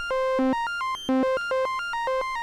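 Synthesizer oscillator playing a fast sequence of short notes that jump between pitches, run through the Bastl Propust's passive 880 Hz low-pass filter. It sounds like a traditional filter tuned to a set frequency.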